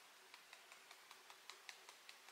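Fingertips lightly tapping the side of the other hand (the EFT karate-chop point), faint, even taps about five a second.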